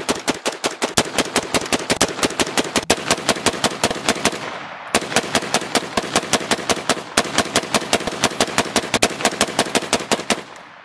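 Rapid semi-automatic rifle fire through a HUXWRX HX QD Ti .30-caliber suppressor, several suppressed shots a second in long strings, with a short pause just before halfway. The shooting is a 500-round burn-down, firing as quickly as possible.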